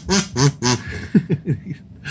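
Kazoo being hummed into: a run of short buzzing notes, then a few quick falling swoops about a second in.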